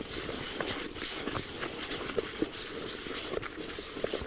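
Hands stirring groundbait round a shallow plastic bowl, a run of repeated soft rustling swishes, as freshly added water is worked through the dry crumb.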